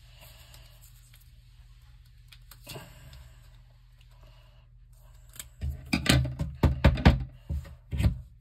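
Paper handling and a run of knocks and bumps on a wooden table from about five and a half seconds in, as a pencil jammed inside a rolled-paper tube is worked loose. A pair of scissors is set down on the table with a knock at the end.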